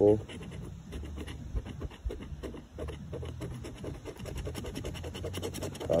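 A large coin scraping the latex coating off a scratch-off lottery ticket's prize box in quick, irregular strokes.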